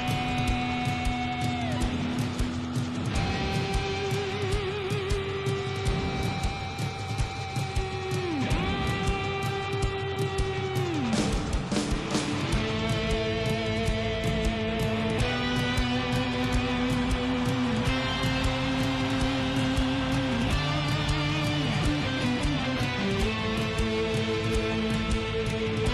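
Rock music from a live concert recording: electric guitars, bass guitar and drums playing together. Long held melody notes waver and slide down at their ends, over steady drumming.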